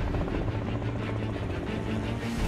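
Helicopter flying, its rotor beating in a rapid, even rhythm over a low steady hum.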